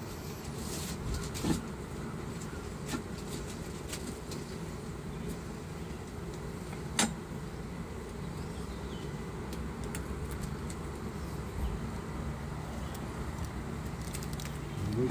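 Honey bees humming steadily from an open hive, with a few brief clicks and knocks of wooden frames being handled, the sharpest about seven seconds in.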